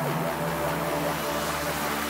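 Progressive psytrance synth passage: sustained synth notes under a hissing noise wash, with brief sweeping pitch glides and no clear drum beat.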